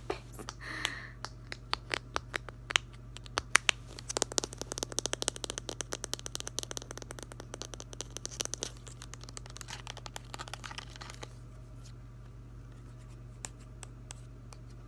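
Fingernails tapping and scratching on a small plastic Mod Podge bottle and its white cap: scattered taps at first, then a fast run of tapping with scratching from about four seconds in, thinning out and stopping about eleven seconds in.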